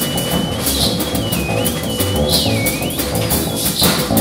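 Free-improvised music: a theremin plays a high, thin line of held notes joined by slides up and down, over a drum kit with cymbal and drum hits and upright bass.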